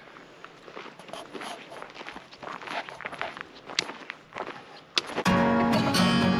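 Footsteps crunching on a dirt trail, an irregular patter of steps for about five seconds. Near the end, background music comes in suddenly and is much louder.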